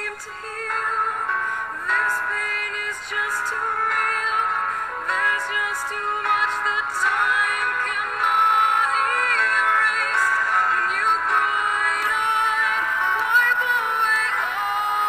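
A song with a singing voice carrying the melody over backing music.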